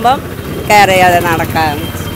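A woman speaking briefly over steady street traffic noise.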